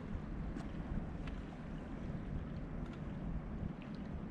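Wind buffeting the microphone: a steady, gusting low rumble, with a few faint short ticks over it.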